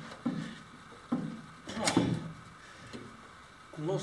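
Homemade chair with a fiberglass seat on wooden legs knocking and creaking as a person sits in it and shifts his weight, testing it: a few dull knocks under a second apart, the sharpest about two seconds in.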